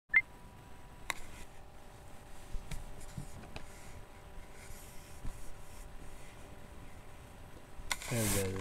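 A short high beep at the very start, then quiet room noise with a faint steady hum and a few light clicks.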